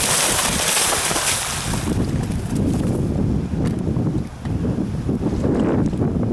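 A horse cantering through shallow water, its hooves splashing, for about the first two seconds. After that, wind rumbles on the microphone.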